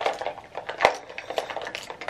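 Plastic makeup containers (compacts, tubes, palettes) clicking and knocking against one another as they are packed into a small makeup pouch: a run of light clicks with one sharper knock a little before halfway.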